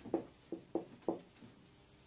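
Marker pen writing on a whiteboard: about four short strokes in the first second or so.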